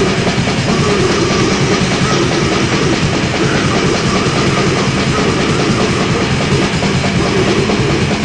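Black/death metal from a lo-fi cassette demo: very fast, dense drumming under sustained distorted guitar, steady and loud throughout.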